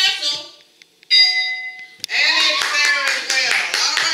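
Game-board answer-reveal chime: a steady bell-like ding of several pitches about a second in, lasting about a second. Right after it a group of people shouts and claps.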